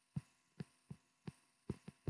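Faint, light taps of a stylus on a tablet touchscreen as numbers are handwritten, about six taps in two seconds at uneven spacing.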